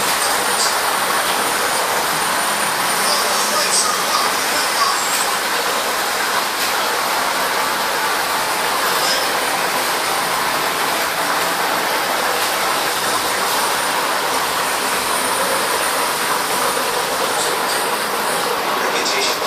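Aquarium aeration: air bubbling up from an air stone through the tank water, a steady rushing noise without a break.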